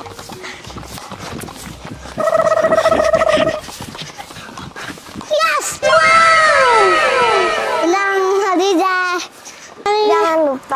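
A child's long held shout about two seconds in, over low outdoor noise. From about five and a half seconds, an added cartoon sound effect of many overlapping whistle-like tones sliding downward, followed by quick warbling tones.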